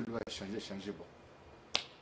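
A man speaking briefly, then a single sharp click near the end, louder than the speech.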